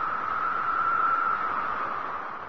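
Steady hissing whoosh of a broadcast intro sound effect, a band of filtered noise that swells slightly about a second in and eases off near the end.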